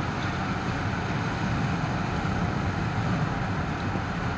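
Steady road and engine noise of a moving car, heard from inside the cabin, with a low rumble.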